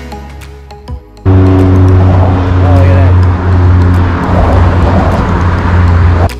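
A loud, steady engine drone with rushing noise, starting abruptly about a second in.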